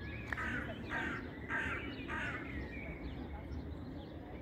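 Crow cawing four times in quick succession, harsh rasping calls about half a second apart, over a steady low background hum.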